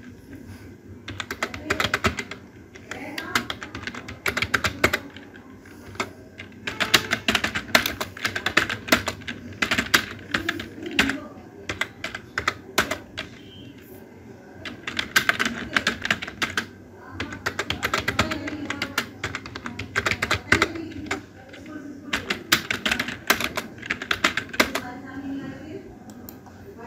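Typing on a computer keyboard: bursts of rapid keystrokes with short pauses between them.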